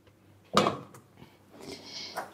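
A stainless steel stockpot of rice and water set down on a gas cooktop's grate: one clunk about half a second in, then quieter knocks as the burner knob is turned.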